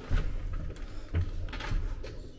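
Two dull thumps about a second apart, with a few light knocks between them.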